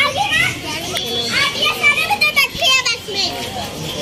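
Children's voices chattering and calling out, several high-pitched voices overlapping.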